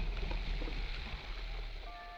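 Anime soundtrack: a low, quiet rumble with held musical notes coming in near the end.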